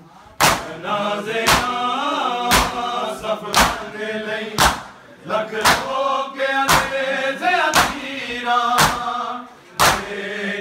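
A group of men chanting a noha in unison, with a loud open-handed chest-beating slap from the whole group in time about once a second.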